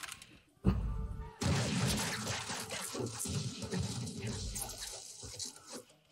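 Film soundtrack: a rifle volley from a line of infantry, starting suddenly about a second in and followed by a few seconds of crackling gunfire and battle noise with music, fading out near the end.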